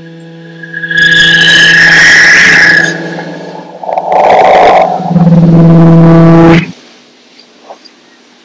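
Live experimental electronic music: a steady droning tone, then loud harsh distorted blasts that cut off suddenly about two-thirds of the way in.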